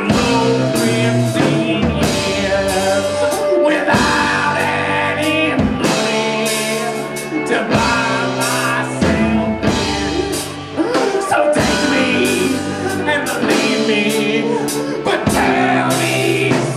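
A live band playing a song: a man singing lead over electric guitar, fiddle and a drum kit.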